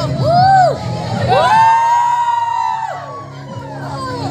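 Audience whooping and cheering over dance music with a steady low beat; a long drawn-out "woo" rises and falls from about a second in, while the music drops back.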